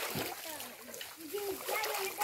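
Water splashing in a shallow stream as hands scoop and stir it, with a voice heard in the second half.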